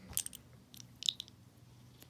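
A few light clicks of hard plastic Lego minifigure parts being handled and pulled apart: a couple near the start and a small cluster about a second in.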